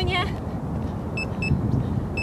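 A steady low outdoor rumble, with two short high chirps about a second in.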